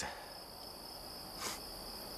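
Crickets chirring in a steady, high-pitched, unbroken trill, with a brief soft hiss about one and a half seconds in.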